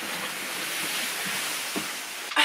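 A large cardboard box being pushed across the floor, a steady scraping hiss that stops as it comes to rest.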